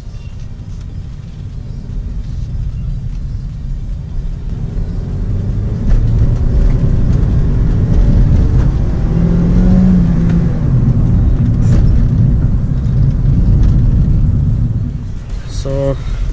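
A Honda Civic's 1.8-litre four-cylinder engine with road noise, heard from inside the cabin as the car accelerates. It grows louder over the first six seconds, holds steady and eases slightly just before the end.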